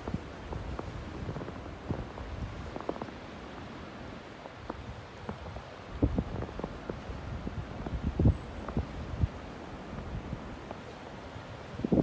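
Footsteps on fresh snow: irregular soft thuds, a few louder ones in the second half, over a low steady rumble on the microphone.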